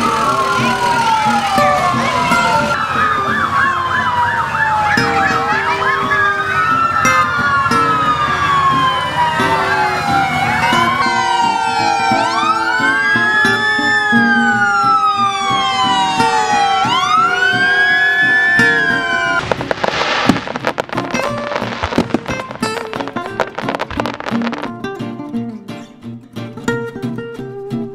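Several fire truck sirens wailing and yelping together, in many overlapping rising and falling tones, until about 19 seconds in. A brief burst of noise follows, and guitar music comes in near the end.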